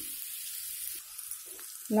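Butter sizzling as it melts in a hot non-stick frying pan beside fried potato cubes: a soft, steady hiss.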